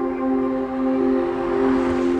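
Ambient background score of sustained keyboard chords, with a rising hiss swelling in over the second half.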